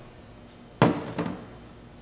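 A sharp knock of a hard object on the kitchen countertop a little under a second in, followed by a lighter knock just after.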